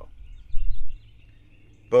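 Pause in a man's speech, filled with outdoor background noise: faint high bird chirps and a low rumble that swells briefly about half a second in. The man's speech resumes near the end.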